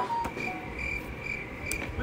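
Crickets chirping in a steady high trill, an edited-in sound effect marking an awkward silence.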